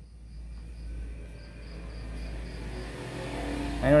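FM radio static from a Sony LBT-A490K hi-fi's tuner while it auto-scans between stations: a steady hiss over a low hum, swelling slightly in the first second. A man's voice starts just before the end.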